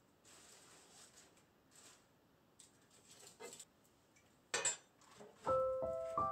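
Faint rustling and handling noises with a short sharp scrape about four and a half seconds in, as bark is pulled off firewood logs. Soft piano music starts near the end, single notes held and overlapping.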